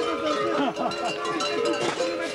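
Many large bells worn by Bulgarian survakari mummers clanging irregularly as they move about, a dense jangle of overlapping ringing tones, with crowd voices mixed in.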